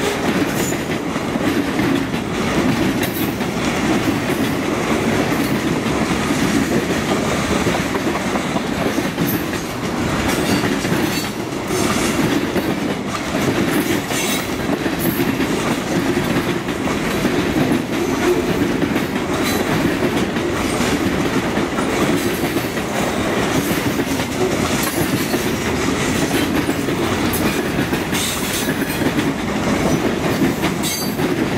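Freight train cars rolling past at speed: a steady rumble of steel wheels on rail, broken by frequent irregular clicks and clacks.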